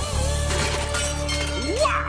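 A cartoon crash with a shattering sound right at the start, as a hang glider crashes, followed by a held music chord. A voice rises in near the end.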